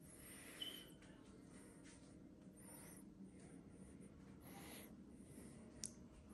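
Near silence: room tone with faint rustling, one brief high chirp about half a second in, and a small click near the end.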